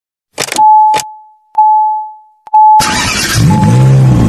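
Intro sound effects: a few sharp hits in the first two and a half seconds, each followed by a ringing tone. Then, nearly three seconds in, a loud rushing swell begins with a gliding, engine-like revving sound under it.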